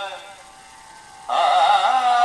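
A sung phrase with vibrato fades out, leaving a short quieter pause, and the singing comes back in strongly about a second and a quarter in.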